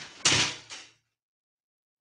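A shower curtain and its rod falling down onto the bathroom floor: a rustling crash with a loud clatter about a quarter second in and a second knock just after, over within the first second.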